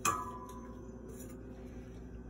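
Stainless steel dog bowl knocked once near the start, ringing with a clear metallic tone that fades away within about a second.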